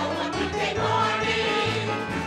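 Men and women of an amateur cast singing together as a group over live band accompaniment with a steady bass line.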